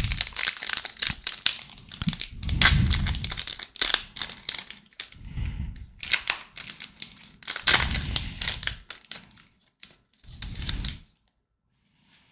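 Wrapper of a Panini Prestige 2023 football card pack crinkling and tearing as it is opened by hand, in irregular bursts of crackle with some handling bumps. The sound stops about a second before the end.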